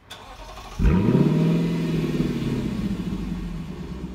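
Car engine sound effect: the engine revs up sharply about a second in, then holds a steady note that slowly sags and fades.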